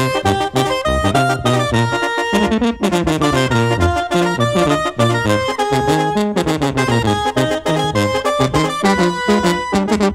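A banda wind band playing an instrumental tune: clarinets and brass with a sousaphone bass line over a steady drum beat.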